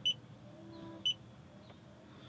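Creator C310 handheld OBD-II scan tool beeping on its key presses: two short, high-pitched beeps about a second apart as its menu is stepped through.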